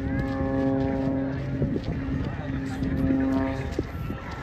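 Aerobatic propeller plane's engine droning steadily overhead, breaking off just before the end.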